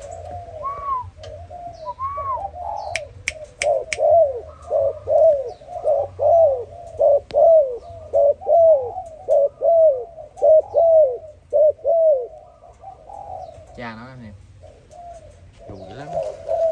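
Malaysian-line spotted dove cooing: a rapid run of short notes, each rising then falling, about two a second for some twelve seconds.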